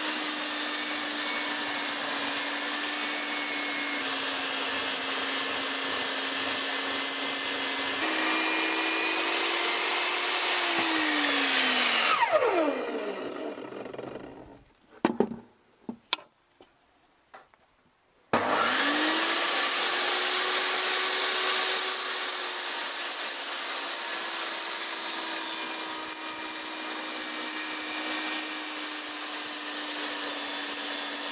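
VEVOR 1800 W portable table saw ripping wood, its motor note steady under load. About eight seconds in, the note steps up as the blade runs free. It is then switched off and winds down with a falling whine, and a few knocks follow in the quiet. About eighteen seconds in, the saw is switched back on with a rising whine and settles to a lower, steady note as the next cut begins.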